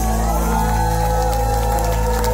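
Live heavy metal band, amplified guitars and bass holding a chord that rings on at the end of a song, with the crowd cheering over it.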